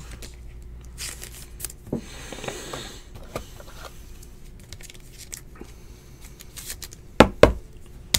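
Clear plastic trading-card sleeve rustling and crinkling as a card is handled and slid into it, with scattered light clicks. Two sharp taps come close together near the end.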